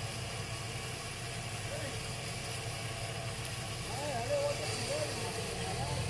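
A 4x4 SUV's engine running steadily at low idle in deep mud, with faint voices in the distance.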